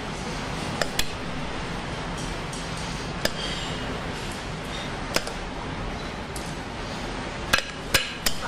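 A handful of sharp, brief clinks and taps of a metal ladle against a glass bowl and a foil-lined metal tray as custard is ladled into molds, over a steady kitchen background hum.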